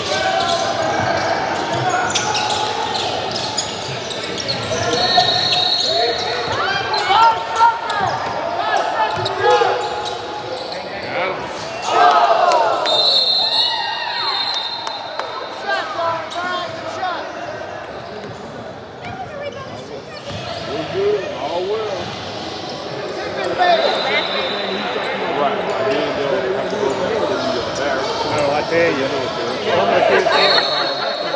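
Basketball bouncing on a hardwood gym floor, the knocks echoing in a large hall, with players' voices. A brief high steady whistle tone sounds a few times.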